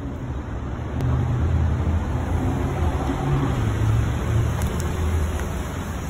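A steady low rumble that grows louder about a second in and holds.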